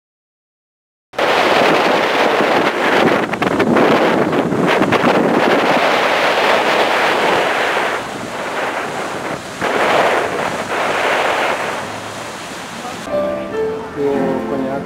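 Wind buffeting the microphone over rushing sea water on the deck of a moving ferry, a loud steady rush that starts suddenly about a second in. Music with distinct notes comes in near the end.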